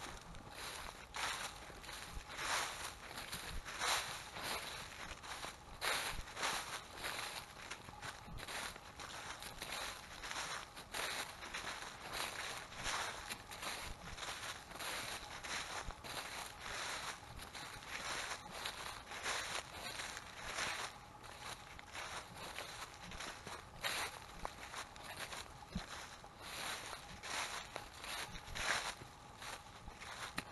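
Footsteps through a thick layer of dry fallen leaves, each step a short rustle, coming irregularly at roughly one a second.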